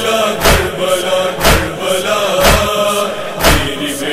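Nauha (Muharram lament): voices chanting a long, drawn-out line over a steady beat of heavy thumps about once a second, the rhythm of sina-zani chest-beating (matam).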